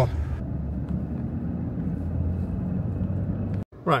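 Steady low rumble of a car's engine and tyres heard from inside the cabin while driving; it cuts off suddenly shortly before the end.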